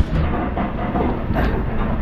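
Restaurant background din: a steady low rumble with faint background voices and a single sharp clatter about one and a half seconds in.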